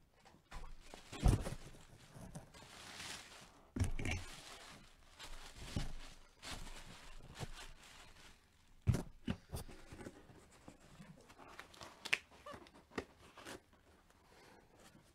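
Handling noises at a table: irregular knocks and taps with crinkly rustling of packaging, including a longer rustle about three seconds in.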